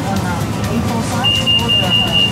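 Metro train's door-closing warning beeper sounding in the carriage while it stands at the station: a high, steady pulsing beep that starts about a second in and keeps going.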